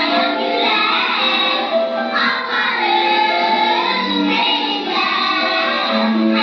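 A group of children singing together in chorus.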